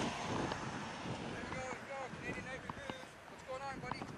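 Tractor-trailer driving past on the road, a broad rush of tyre and engine noise that fades away over the first second or two.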